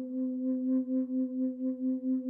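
Singing bowl ringing on with a steady low tone that swells and fades about three times a second.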